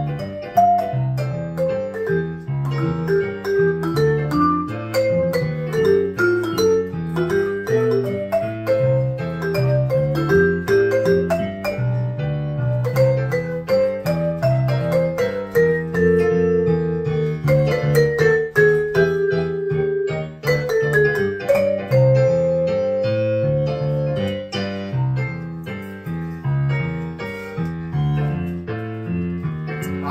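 Vibraphone played with mallets, a swinging jazz melody and improvised lines over a recorded piano loop. Two notes are held and left to ring, one past the middle and one later on.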